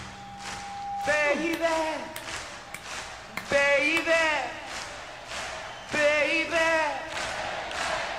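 Male rock singer in a live concert recording singing three short, unaccompanied vocal phrases about two and a half seconds apart, each bending up and then down in pitch, with quiet gaps between them.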